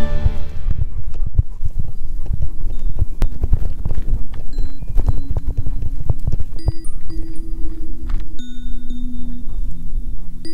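Irregular knocking and thudding from a GoPro camera jostling on a walking dog's harness, under background music; held bell-like music notes come in about two-thirds of the way through.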